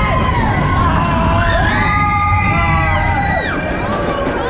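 Several roller coaster riders screaming and whooping in long held cries at once, a fresh set of cries rising about a second and a half in and breaking off near the end, over the steady low rumble of the coaster train and wind.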